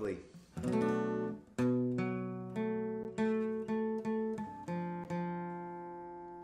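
Acoustic guitar strummed slowly, chord by chord, with each chord left to ring and fade before the next strum; the chord changes about four and a half seconds in.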